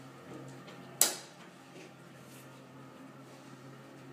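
A single sharp knock about a second in, dying away quickly, over a faint low steady hum.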